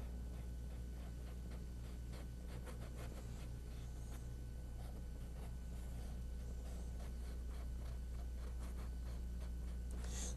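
Faint, irregular scratchy strokes of a small paintbrush dragged lightly across canvas, dry-brushing acrylic paint just skimming the surface, over a steady low electrical hum.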